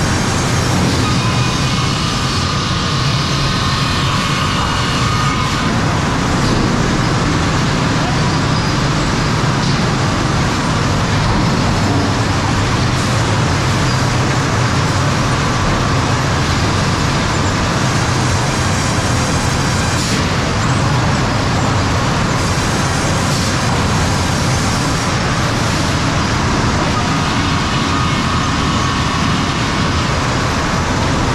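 Steady, loud sawmill machinery noise at the edger line: motors, roller conveyors and transfer chains running continuously, with no distinct strokes.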